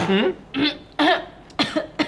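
A person coughing in about four short bursts roughly half a second apart.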